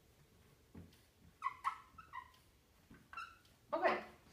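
Dry-erase marker squeaking on a whiteboard as it writes: several short, high chirps in a quick cluster, then one or two more a second later. A brief louder noise follows near the end.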